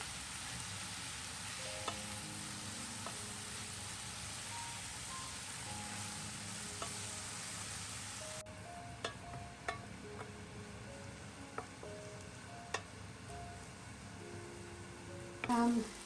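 Water spinach and ground beef sizzling as they are stir-fried in a stainless steel pan with a wooden spoon. The sizzle is loud and steady for about eight seconds, then drops suddenly to a quieter sizzle broken by a few sharp clicks of the spoon against the pan.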